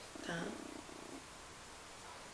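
A woman says one short word, "tá?", with a short low buzz under and just after it, then near silence for the rest.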